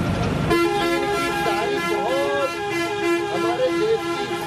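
A vehicle horn sounds one long steady blast from about half a second in to near the end, over a man's speech.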